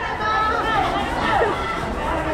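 Chatter of several people talking at once in a gymnasium, with no single clear speaker.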